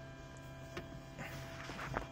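Faint steady electrical hum from the car's audio system with a few faint clicks, while the head unit's Bluetooth call is still connecting, just before the ringing starts.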